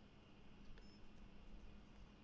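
Near silence over a faint steady hum, broken about a second in by one short, high key beep from the Mindray ultrasound scanner's control panel as a measuring caliper point is set.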